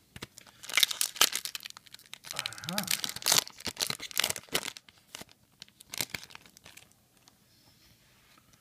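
A foil Yu-Gi-Oh booster pack being torn open and crinkled by hand: a quick run of crackling tears over the first five seconds, then quieter handling.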